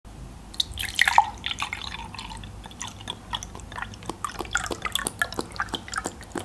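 Juice poured from a carton into a glass: a quick, irregular run of small gurgles, drips and splashes, with a louder cluster about a second in.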